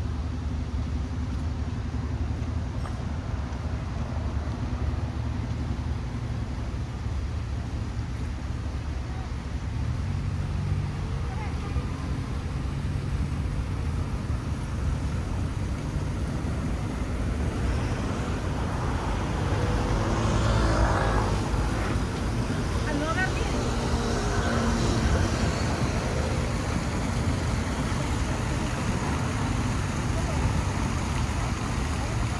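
Steady city traffic noise: a low rumble of cars in slow, heavy traffic. People nearby talk in the second half.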